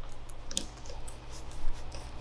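Flathead screwdriver turning the clamp screw of a kart carburetor's air filter: a few faint metal clicks and scrapes, one about half a second in and a louder one near the end, over a steady low hum.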